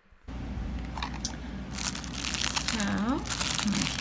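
Thin clear plastic bag crinkling and crackling steadily as it is handled, with many small crackles.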